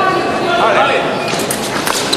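Fencers' feet stamping on the piste and foil blades clicking together in a quick exchange of several sharp clicks near the end, over voices in a large hall.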